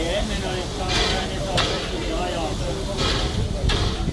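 Four short hisses of steam, in two pairs, from a Finnish Hr1 'Ukko-Pekka' steam locomotive standing at the platform. People are talking underneath.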